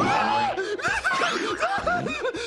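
A cartoon horse's snickering laugh, a whinny-like run of short quick calls, set off by a brief held cry at the start.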